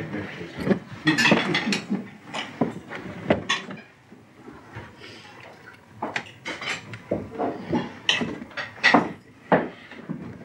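Cutlery and china clinking at a dining table: knives and forks on plates and glassware knocking, in many short, sharp clinks, busiest in the second half.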